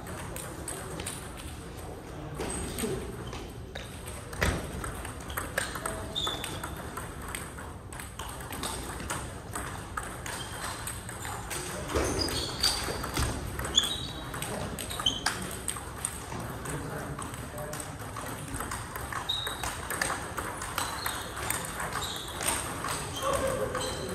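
Table tennis balls clicking off rackets and tables in quick, irregular rallies, with hits from several tables at once. Some hits give a brief high ping.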